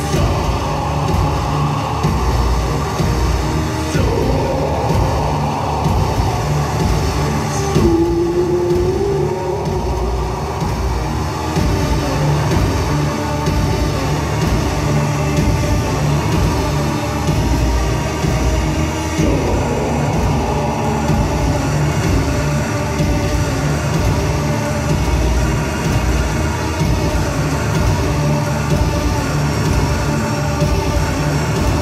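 Live electronic music through a PA: a steady pulsing bass beat under a dense droning synth layer, with a short held tone rising in about eight seconds in.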